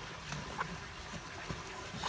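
Hens on stone paving in quiet outdoor surroundings: a few faint clicks as they move about, and a brief soft low call about a third of a second in.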